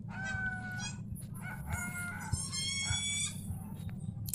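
Long, pitched animal calls in three parts over about three seconds, the last one the highest.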